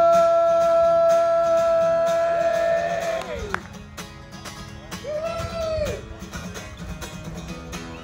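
Solo male voice and acoustic guitar: a long sung note is held steady for about three seconds and then falls away, over strummed chords. A shorter sung note rises and falls about five seconds in, and the guitar plays on more quietly.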